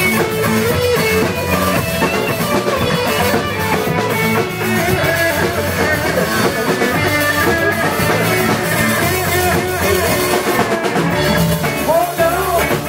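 Live rock band playing an instrumental passage on guitars and drum kit, loud and steady.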